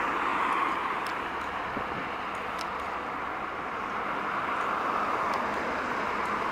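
Loaded Scania trucks passing on a highway: a steady rush of tyre and diesel engine noise. It eases slightly after the first second, then builds again as the next truck comes closer.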